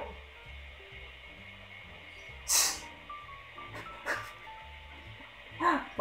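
Quiet background music from the anime soundtrack, held soft notes. About two and a half seconds in comes a short, sharp hissing burst, with fainter short noises about four seconds in.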